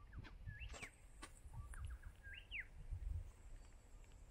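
Faint bird calls: short chirps that rise and fall in pitch, about half a second in and again about two and a half seconds in, over a low rumble.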